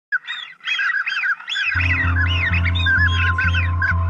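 A rapid run of short, high, arched bird calls. Background music with a steady bass beat comes in at under two seconds and runs under them.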